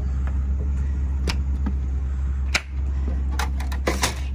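Travel trailer entry door latch clicking and the door being pulled open, with a few sharp clicks and then a cluster of clicks and knocks near the end, over a steady low rumble.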